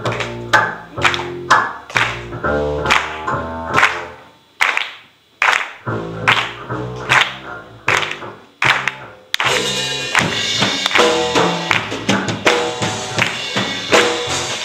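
Upright double bass played pizzicato in a live band, low plucked notes with a sharp click on each attack, about two a second, in short phrases with gaps. About nine seconds in, the rest of the band comes in with drums and cymbals.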